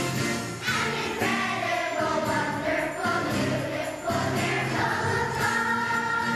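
Children's choir singing a song with musical accompaniment.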